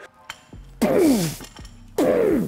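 A man's hard voiced exhales, twice about a second apart, each falling in pitch, as he drives up out of barbell back squats.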